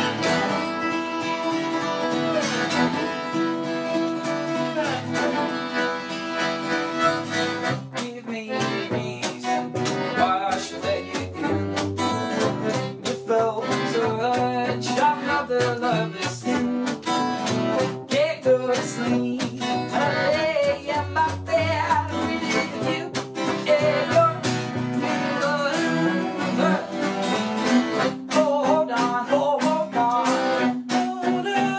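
Acoustic folk trio playing: strummed acoustic guitar with piano accordion and bowed cello.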